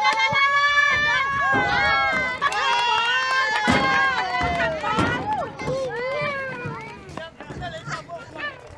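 Several people shouting and calling out loudly over one another, without clear words, easing off over the last few seconds, with a couple of sharp thumps about midway.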